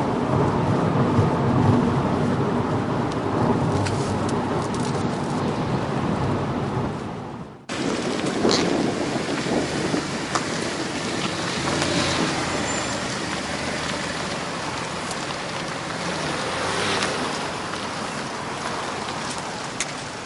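Car on the move: steady road and engine noise from a Mercedes C 250 CDi diesel saloon. About eight seconds in the sound drops out abruptly and returns as a brighter, hissier outdoor car sound with a few faint ticks.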